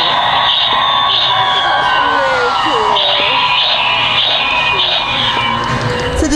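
Ghostface Sidestepper animatronic running its try-me sound track: loud, continuous recorded music with a voice.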